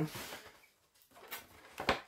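Handling noise: a brief rustle, then a couple of light knocks and one sharp, louder knock near the end, as objects are moved about.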